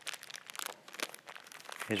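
Plastic wrapping of a small packet crinkling and rustling as it is handled in the hands, a quick irregular run of crackles.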